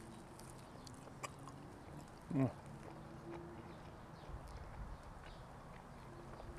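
Quiet chewing of a bite of pizza crust, with a few faint crisp clicks, and a short 'mm' of approval about two seconds in.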